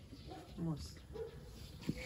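A lull in conversation with a few faint, short voice sounds, one falling in pitch about half a second in.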